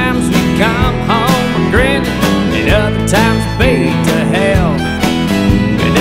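Country band playing an instrumental break: a lead line of short notes bent up and down in pitch over guitar, bass and a steady drum beat.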